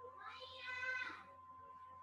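A faint, high-pitched drawn-out call of about a second, voice-like and meow-like, from a cat or a small child in the room.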